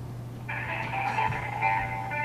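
Telephone hold music heard through a phone, thin and narrow-sounding, starting about half a second in, over a steady low hum.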